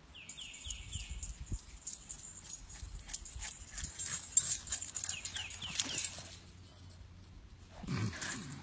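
Boston Terrier puppy running up over the grass with a tennis ball in its mouth: a rustling, scuffing noise that grows loudest around the middle and dies away about six seconds in. Short falling bird chirps repeat in clusters behind it.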